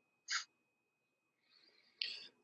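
Quiet pause in a video-call conversation: a faint steady high-pitched tone, a brief breathy noise about a third of a second in, and a soft breath near the end just before the next speaker begins.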